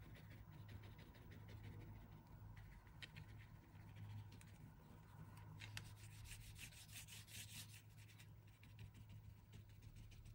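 Near silence: faint scratchy strokes of a paintbrush and fingers rubbing on linen fabric as ink is spread, over a low steady hum.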